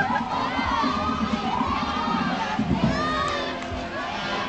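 Parade crowd cheering, with children shouting and yelling: many voices overlapping at once.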